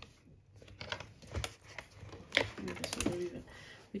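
A page of a spiral-bound paper planner being turned over, with a run of light clicks and taps of paper and pen, the sharpest tap about two and a half seconds in.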